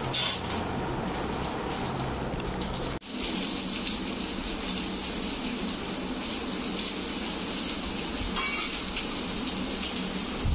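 Steady background hiss with a few faint clinks; the sound drops out for a moment about three seconds in and then resumes.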